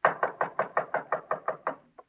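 Rapid knocking on a door, a radio sound effect: an even run of about a dozen sharp knocks, roughly six a second.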